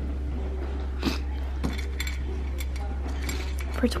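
A few light clinks of glass and metal being handled, over a steady low hum and faint background voices.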